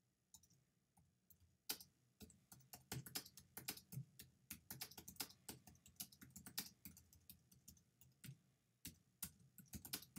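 Typing on a computer keyboard, faint: a few scattered clicks, then quick, irregular keystrokes from about two seconds in.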